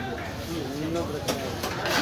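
A heavy cleaver chopping through fish head and bone onto a wooden log block: three sharp knocks in the second half, over the chatter of voices.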